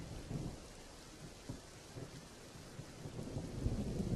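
Faint rain-and-thunder ambience: a steady rainfall hiss with low rumbling that swells a little near the end.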